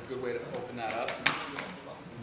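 Voices talking, with one sharp click a little over a second in.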